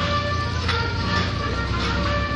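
Vintage military truck engine running with a steady low rumble as the vehicle convoy drives slowly past, with music playing over it.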